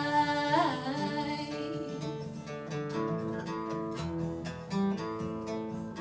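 A woman's held sung note ending about a second in, then an acoustic guitar playing on alone with a run of plucked notes.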